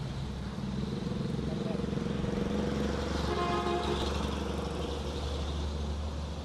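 Road traffic picked up by a field reporter's microphone beside a street: vehicle engines running steadily, with a brief higher-pitched tone about three to four seconds in.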